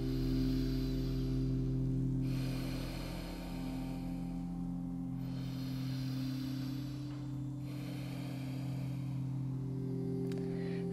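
Soft ambient background music: sustained low drone tones, with an airy wash on top that swells and fades about every two and a half seconds.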